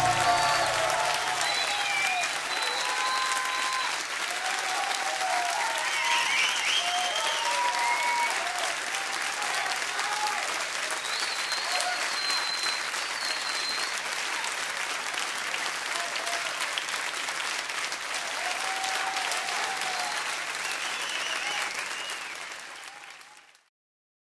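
Audience applauding and cheering at the close of a live music recording, with scattered shouts over the clapping; it fades out near the end.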